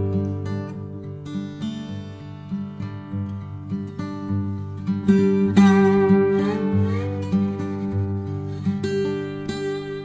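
Background music: acoustic guitar playing plucked notes and strums, with one note sliding up in pitch partway through.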